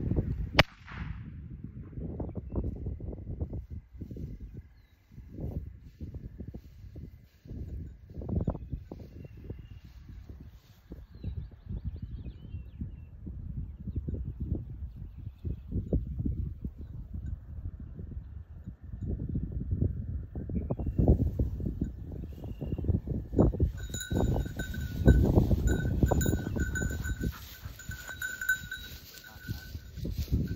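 Wind buffeting the microphone and rustling and footsteps through dry grass, with a single sharp crack about half a second in. In the last six seconds a rapid run of high electronic beeps joins in.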